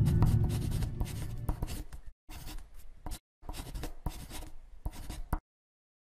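Pen writing on a surface: quick scratchy strokes in short runs, broken by brief gaps of dead silence. The tail of the intro music fades out during the first second.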